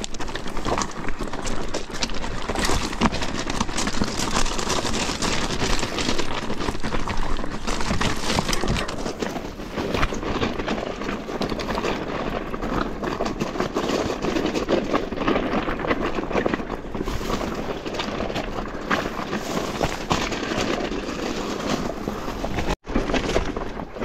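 Mountain bike descending a rough rocky trail: tyres crunching over loose stones and rocks, with continuous rattling and clattering from the bike. The sound cuts out for an instant near the end.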